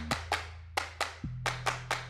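Background music with a sharp, clap-like percussion beat over low sustained bass notes that shift pitch about a second in.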